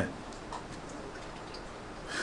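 Quiet room tone with a few faint ticks.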